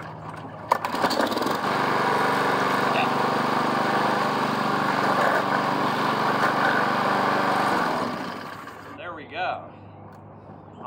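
Four-stroke walk-behind push mower engine, pull-started: a cord pull about a second in, then the engine catches and runs steadily for about seven seconds before cutting out and winding down.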